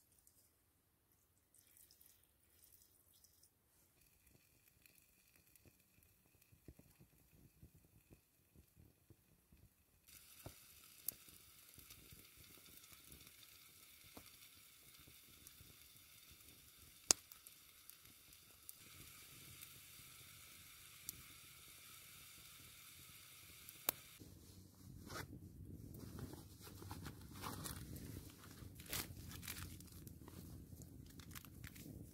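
Small wood fire burning in a fire pan, a faint steady hiss broken by occasional sharp pops. Near the end, a plastic packet crinkles as it is handled.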